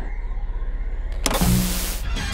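A low fluttering hum, then about a second and a quarter in a burst of loud hissing static with a low buzz under it, as an old CRT television is switched on with a remote.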